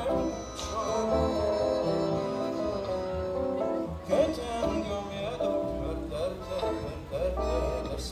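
A live band playing a slow bolero: held melody notes over a steady bass line, in an instrumental passage between sung lines.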